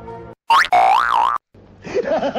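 A comedic cartoon 'boing' sound effect: a loud pitched tone lasting about a second, its pitch rising, dipping and rising again, as background music cuts off just before it.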